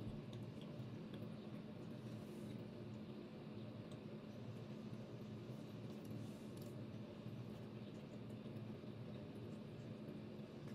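Faint chewing: scattered small clicks from a man's mouth as he eats, over a steady low hum in the room.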